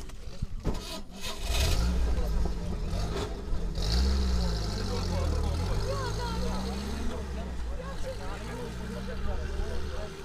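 A motor vehicle's engine running close by, building up about a second and a half in, its pitch rising and falling before it eases off, with voices underneath.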